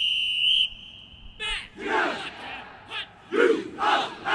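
A drum major's whistle holds one high note and cuts off about a second and a half in. Then the marching band yells short calls together, with loud shouts near two seconds and again about three and a half seconds in.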